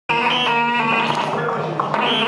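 Live experimental noise music from an amplified prepared box fitted with upright metal rods and springs, worked by hand: dense layered drones and ringing tones that cut in abruptly at the start, with a sharp click near the end.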